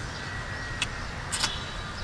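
Steamed crab being eaten by hand: two short crisp cracks of crab shell, just under a second in and again about a second and a half in, over a low steady background rumble.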